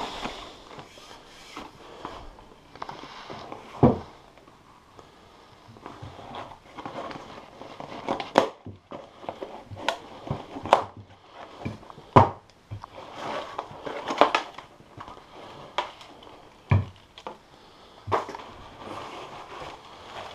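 Cardboard box being unpacked by hand: rustling and scraping of cardboard and paper packing, with scattered sharp knocks and clicks as the plastic strapping is cut away.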